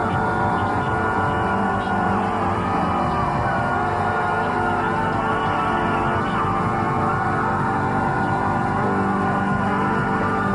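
The show's house band playing the opening theme live, with a drum kit and crashing cymbals driving it.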